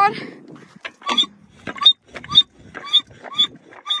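A child's voice making a string of short, high, squeaky noises, about two a second, made on purpose to see whether the creature dislikes the sound.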